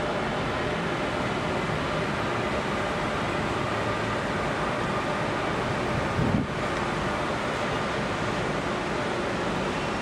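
Steady outdoor city noise of traffic far below, with wind on the microphone, and a brief low bump a little after six seconds in.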